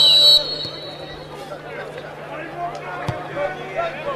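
Referee's whistle blown for kick-off: one shrill, steady blast that ends with a slight drop in pitch about half a second in. Stadium background noise with scattered voices follows, with a single sharp knock near the end.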